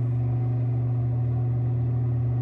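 A steady low machine hum that runs on without change, one that cannot be switched off.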